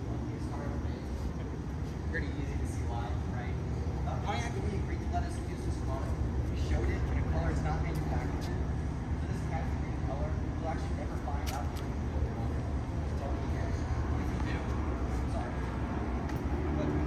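A steady low rumble with faint, indistinct voices of people talking over it.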